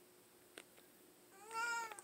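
A house cat gives one short meow near the end, rising a little and then falling in pitch.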